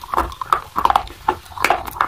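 A person biting and chewing a crunchy white chalk-like stick close to the microphone: a quick run of crisp crunches and snaps, several a second.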